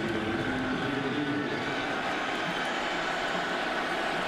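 Steady crowd noise in a packed football stadium, an even, continuous roar with no break.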